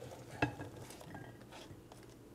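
Sliced onion pushed by hand off a cutting board onto a ceramic plate: one sharp click about half a second in, then faint rustling and light ticks as the slices slide.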